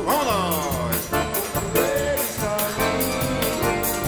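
Live forró band playing an instrumental passage: a piano accordion (sanfona) leads over drum kit, zabumba and guitar, with a fast, steady high ticking rhythm.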